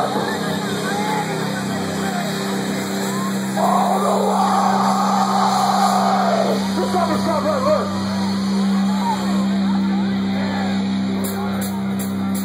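Live metalcore band's sustained droning note through the PA over a festival crowd yelling and cheering, with a loud drawn-out yell from about four to six and a half seconds in.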